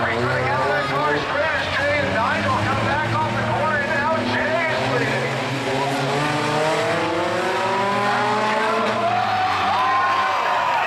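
Several race-car engines running and revving as ski cars, with steel plates welded under their rear rims, slide around the track. One engine climbs steadily in pitch over the last few seconds.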